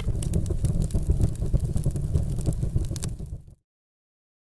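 Cinematic logo sound effect: a deep rumble with fiery crackles and clicks, fading and cutting off suddenly about three and a half seconds in.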